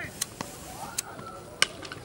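A few sharp knocks over faint voices from the field, the loudest about one and a half seconds in: a cricket bat striking the ball, after which the batsmen set off for a run.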